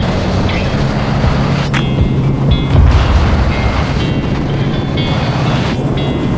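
Suzuki Hayabusa inline-four engine running steadily at highway cruising speed, under heavy wind rushing over the microphone.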